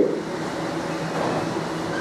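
Steady rushing background noise with no distinct source, as a man's speaking voice trails off at the very start.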